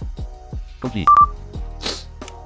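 A short, steady electronic beep from the computer, with a couple of clicks, about a second in, over background music with short falling notes.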